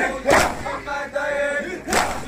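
Crowd of men chanting a nauha lament together, punctuated by two loud unison strikes of matam, hands beating on chests, about a second and a half apart.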